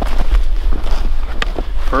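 Scattered crunches and knocks on snow and ice, coming at uneven intervals, over a steady low rumble on the microphone.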